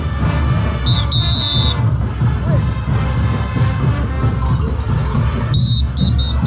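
Parade band music for caporales dancers, with a heavy bass beat. A shrill whistle is blown twice over it, once held about a second in and again near the end.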